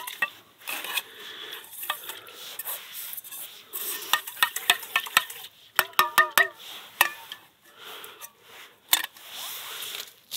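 Dish brush scrubbing inside a metal camping pot in rinse water, with quick scraping strokes and light clinks of metal. A short squeaky sound about six seconds in.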